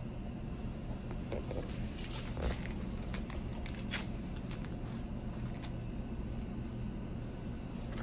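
Quiet room with a steady low hum and a few faint, scattered clicks and rustles of supplies being handled.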